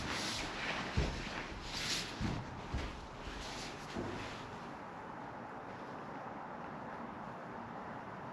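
A few dull knocks on a fibreglass boat deck as a person settles onto it on his knees and shifts about, with clothing rustling. After about four seconds only a steady background hiss remains.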